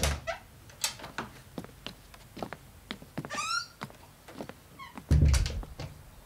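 A wooden interior door being handled: scattered latch and handle clicks, a short creak of the hinge about three and a half seconds in, then a dull thud as the door shuts about five seconds in, the loudest sound.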